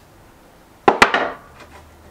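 Two quick, sharp knocks of a hand tool against a wooden workbench about a second in, with a short ringing tail.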